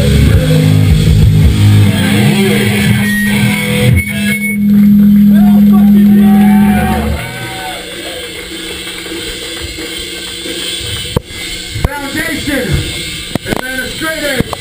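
A live punk band playing loud with distorted guitar and drums, ending on a long held chord that cuts off about seven seconds in. After it, crowd voices and shouts fill the room, with a few sharp knocks near the end.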